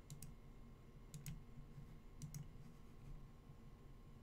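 Faint sharp clicks in three quick pairs, about a second apart, over near-silent room tone.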